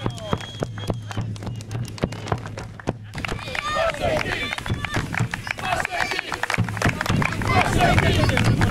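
Scattered hand claps and voices, then, from about three seconds in, dense clapping with voices calling out: a football team and its supporters applauding.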